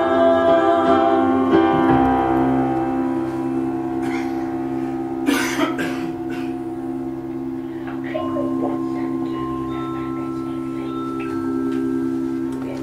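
Two female voices finish a sung phrase in the first two seconds, then a held chord from the accompaniment rings on steadily, with faint high notes joining later. A short noisy sound cuts in a little after five seconds.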